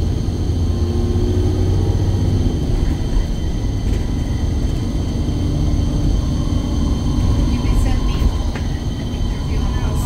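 Alexander Dennis Enviro400 double-decker bus under way, heard from inside the upper deck: a steady low engine and drivetrain drone with a whining tone that comes and goes as it pulls along.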